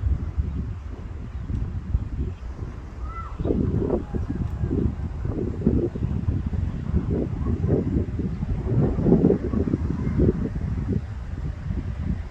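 Wind buffeting the microphone: an uneven, gusty low rumble that comes and goes. There is a brief faint chirp about three seconds in.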